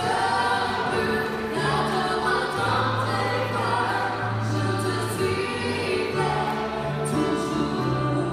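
Women singing a worship song into microphones, accompanied by a Nord Piano stage keyboard, with long held low keyboard notes under the voices.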